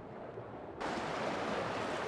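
A steady rushing noise that cuts in abruptly a little under a second in, after a moment of faint hiss.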